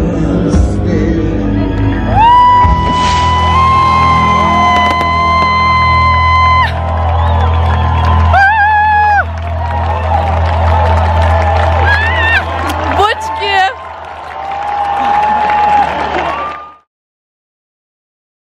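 Live concert music recorded from within the crowd, with voices holding long notes and crowd cheering over the band. The sound cuts off suddenly near the end.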